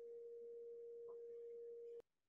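A faint, steady pure electronic tone, a single pitch held without change, that cuts off suddenly at the end.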